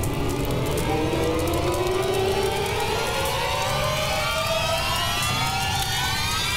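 Film background score: a long, slowly rising sweep of several tones laid over a low rumble, a dramatic build-up effect.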